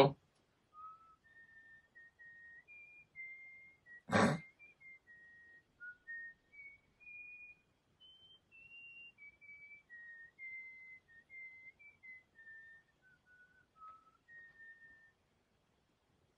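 A person whistling a tune: a faint run of single clear notes stepping up and down, with one short loud burst about four seconds in.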